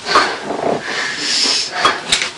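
A frightened person gasping and whimpering in several short, breathy bursts while coming round.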